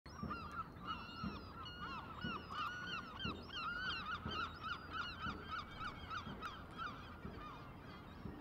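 A flock of birds calling, with many short overlapping calls that thin out near the end. A faint low thump comes about once a second underneath.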